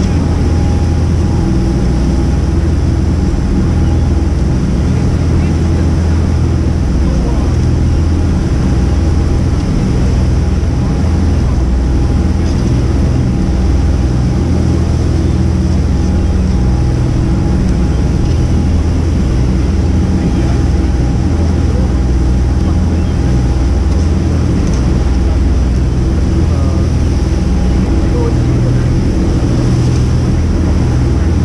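Sportfishing boat's engine running steadily underway, a loud constant drone with a thin steady whine above it, over the rush of the wake.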